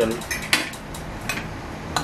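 A metal fork clinking against a glass serving bowl and dishes as spaghetti is served: a few separate, sharp clinks spread through the moment.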